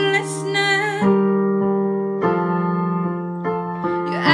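A woman singing a pop song over an accompaniment of held chords. Her sung line moves in the first second, then notes are held while the chords change about a second in and again about two seconds in.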